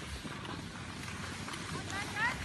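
Steady rushing of skis sliding over packed snow, with wind buffeting the microphone. High children's voices call out briefly near the end.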